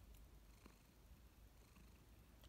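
Near silence with a faint, steady low purr from a calico cat.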